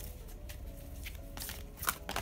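A deck of oracle cards being shuffled by hand: a few soft papery flicks and slaps of card edges, the clearest two near the end.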